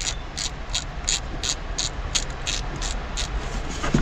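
Hand socket ratchet clicking in an even rhythm, about three clicks a second, as a bolt on a John Deere diesel engine is worked loose.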